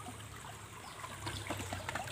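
Faint trickle of water flowing along a concrete ditch, with a few light ticks in the second half.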